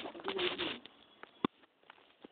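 A brief low, voice-like sound in the first moment, then a sheet of newspaper being handled: light rustles and small ticks, with one sharp click about a second and a half in.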